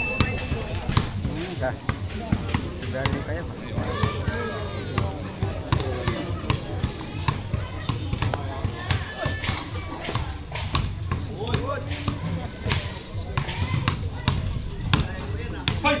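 Basketball dribbled repeatedly on a hard outdoor court: sharp bounces at an uneven pace, with spectators' voices chattering around it.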